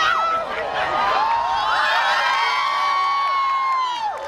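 Crowd of eclipse watchers cheering, whooping and screaming as the sun goes fully dark at totality, with laughter and one voice holding a long high cry from about a second in.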